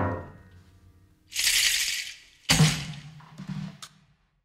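The last grand piano chord fades out. A short burst of high drum-kit percussion follows about a second in. A final drum hit with cymbal comes at about two and a half seconds, decays, and is followed by a few light strikes before the sound cuts off.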